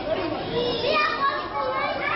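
Many children's voices in an audience, chattering and calling out over one another.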